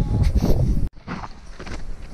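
Loud low rumble of wind on the microphone on an exposed snowy ridge, cut off suddenly about a second in; then footsteps crunching in snow.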